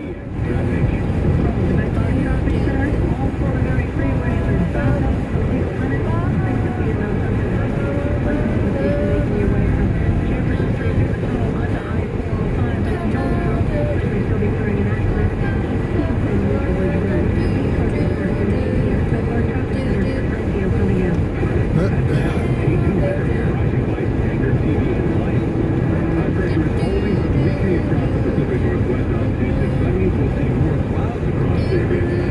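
Steady road and tyre noise with engine hum inside a moving car's cabin.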